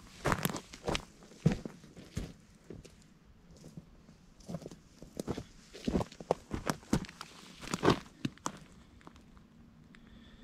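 Footsteps on dry twigs and brush: a string of uneven crunching steps, the loudest about a second and a half in and about eight seconds in.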